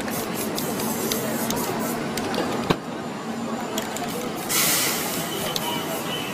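Aerosol spray paint can hissing in bursts as paint is sprayed onto a canvas, with one loud burst of spray about four and a half seconds in. A sharp click comes near three seconds.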